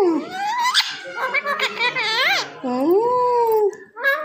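A pet talking parakeet mimicking human speech in a run of short chattering phrases, ending in one long swooping call about three seconds in.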